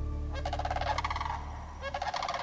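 A bird calls twice with a fast, rattling, gobble-like call, the first about a third of a second in and the second near the end, over the fading last notes of guitar music.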